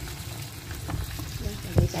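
Tilapia fillets frying in oil in a grill pan while a plastic slotted spatula scrapes under them, with a few clicks and a sharp knock of the spatula against the pan near the end. The fillets have stuck to the pan because the oil was not hot enough when they went in.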